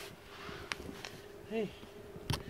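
A faint steady hum, with two light clicks and a short low vocal 'mm' sound near the end.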